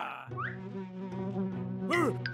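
A cartoon fly buzzing steadily, starting about a quarter second in.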